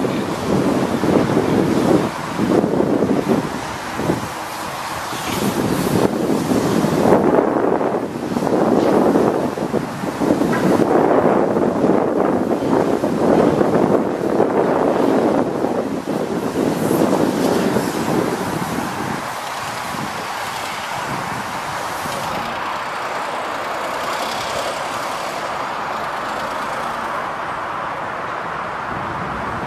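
2002 Volvo G730 VHP motor grader's diesel engine running as the machine drives. The sound rises and falls through the first half, then settles lower and steadier for the last third.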